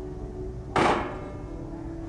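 A single sharp metal clang as a hinged metal lid is shut down over a gas burner, ringing briefly, with faint background music underneath.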